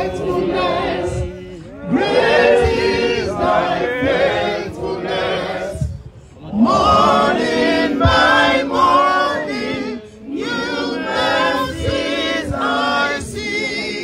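A crowd of people singing together in chorus, in long phrases broken by short pauses.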